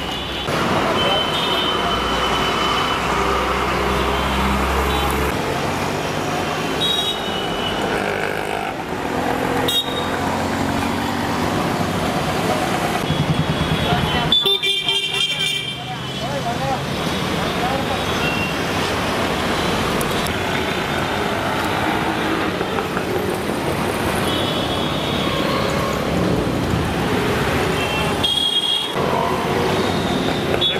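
Busy street traffic with vehicle horns tooting several times, and people talking.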